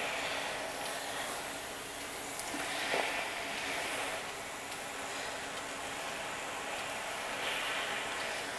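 Steam iron hissing as it puts out steam onto heat-moldable quilt batting. A steady hiss that swells briefly about three seconds in.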